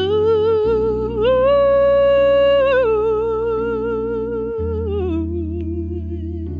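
A woman's wordless vocal ad-lib, humming or singing with no words, over electric keyboard chords. Her note steps up about a second in, holds with vibrato, then slides down in a wavering run and fades out around five seconds, while the keyboard chords change twice beneath it.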